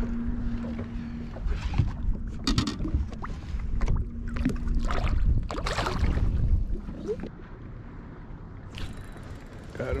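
Handling knocks and rustles in a small aluminium boat, then a splash about six seconds in as a smallmouth bass is let back into the river, with a steady low hum early on. Quieter after about seven seconds.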